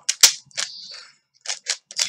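A 3x3 Rubik's Cube being turned quickly by hand: sharp clicks of the plastic layers snapping round, the loudest just after the start, a short scraping slide in the middle, and three more quick clicks near the end.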